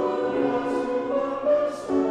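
Mixed choir of men's and women's voices singing a worship song in held, sustained notes, with brief sibilant consonants of the words about a second apart.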